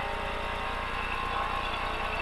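Lada VFTS rally car's four-cylinder engine, heard from inside the cabin, running steadily while the car drives on.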